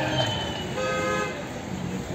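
Music trailing off at the start, then a brief horn toot about a second in over faint street noise.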